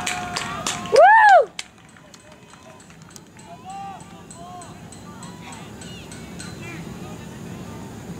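A loud single vocal shout close to the microphone about a second in, its pitch rising then falling. It is followed by fainter distant calls and voices over steady open-air background noise.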